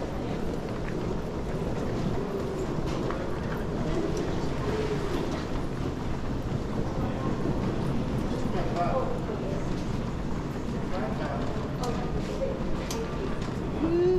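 Airport luggage trolley being pushed across a tiled floor, its wheels giving a steady low rumble, with faint voices of people in the background.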